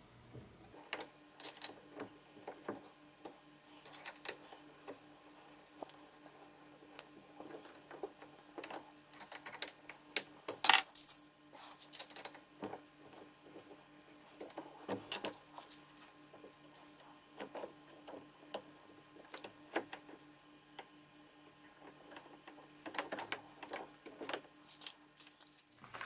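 Faint, scattered small metal clicks and clinks as screws are turned with an Allen key in a motor-mount clamp collar, with one brighter ringing clink about eleven seconds in. A steady low hum runs underneath.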